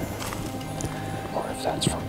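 A man whispering, with soft background music underneath.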